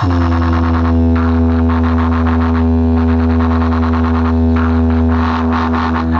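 Loud electronic DJ music played through a towering stack of speaker cabinets: one long, steady bass drone with a stack of overtones and no beat.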